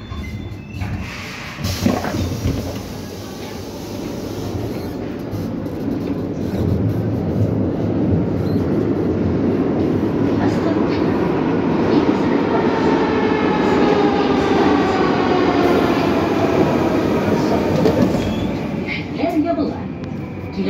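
Metro train heard from inside the carriage. Its running noise swells steadily for the first several seconds and stays loud, with a faint motor whine in the second half, then eases near the end.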